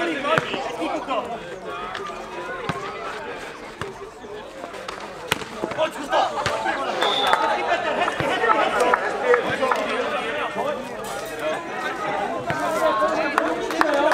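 A nohejbal rally: a football thudding off players' feet and the clay court several times in irregular succession, over continuous voices of players and spectators.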